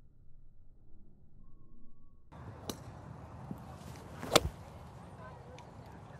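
Golf iron (Callaway Apex MB) striking a ball off a range mat: one sharp, loud crack a little past four seconds in, after a fainter click. Before that there is only quiet, muffled background.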